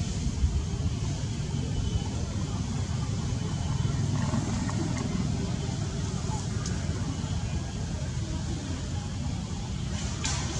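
Steady low outdoor rumble with no clear animal calls, and a few faint short clicks around the middle.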